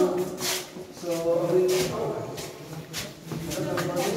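People's voices in a cave passage: short untranscribed speech sounds, with one longer drawn-out vocal sound about a second in.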